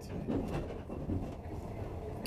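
Steady low rumble of a passenger train running, heard from inside the carriage, with faint voices in the background.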